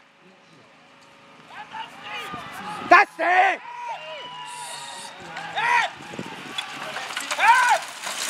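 Short shouted voice calls, rising and falling in pitch, from a carriage driver and groom steering a pony pair through a driving obstacle. A few calls come about three seconds in, another near six seconds and one near the end.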